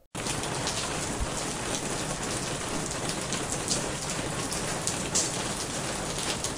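Steady rain falling, an even hiss with scattered droplet ticks, cutting in suddenly just after the voice ends.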